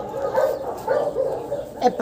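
Small dogs playing, giving a series of short, whiny yips and whimpers.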